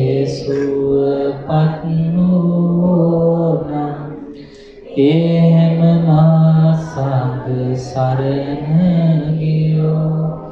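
A male voice chanting Pali verses in long held phrases on a few steady notes, stepping between two pitches, with a short breath pause about four seconds in.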